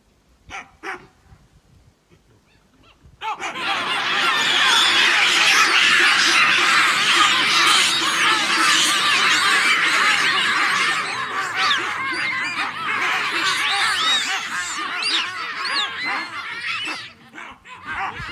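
A troop of baboons barking and screaming in alarm. Many loud calls overlap, rising and falling in pitch, and break out suddenly about three seconds in, then thin out near the end. A couple of brief sharp sounds come before it.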